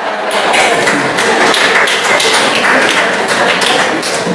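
Scattered handclapping from an audience: many irregular, overlapping claps.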